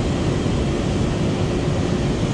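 Steady rumbling roar of water pouring over a low-head dam spillway.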